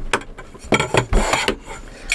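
Metal drying rods being handled and hooked into wall holders: a few sharp clicks and knocks with some metal scraping and rubbing.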